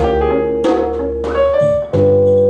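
Ensemble music with a Nord Stage 2 stage keyboard: held chords with new notes struck about every half second, and a brief dip just before a new, slightly louder chord near the end.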